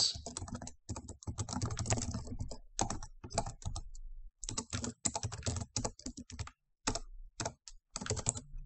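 Typing on a computer keyboard: irregular runs of quick keystrokes broken by short pauses.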